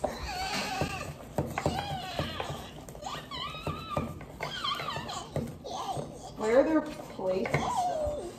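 Indistinct voices of young women talking and murmuring, with a few short, light clicks and knocks in between.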